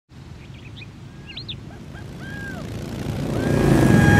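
Birds chirping over a low engine rumble that builds steadily as a group of motorcycles approaches, reaching its loudest as they pass at the end.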